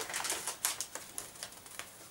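A folded paper letter being unfolded by hand: irregular, crisp rustling and crackling of the sheets.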